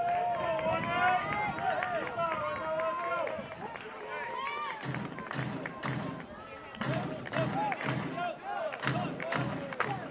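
Ballpark sound between pitches: music over the stadium public-address system mixed with crowd voices. From about halfway through it settles into a steady beat about twice a second.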